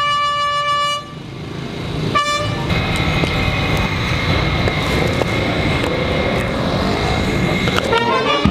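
Brass band in the street holding a long chord that cuts off about a second in, with one short blast of the chord at about two seconds. After that comes a steady, loud, noisy outdoor din.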